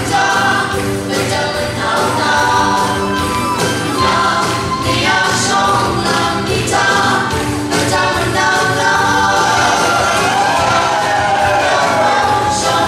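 A group of voices singing a song together, with instrumental accompaniment, at a steady loud level.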